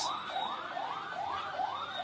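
An emergency vehicle siren sounding in a fast rising-and-falling yelp, about two to three sweeps a second.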